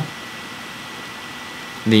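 Steady low hiss of the recording's background noise, with a faint thin high tone running through it, during a pause in speech.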